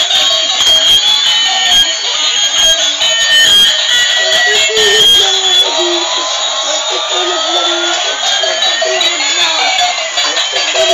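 Battery-operated light-up toys, a toy airliner and a school bus, playing a tinny electronic tune of short stepped beeping notes. A slow rising tone, like a toy jet-engine sound effect, climbs through the second half.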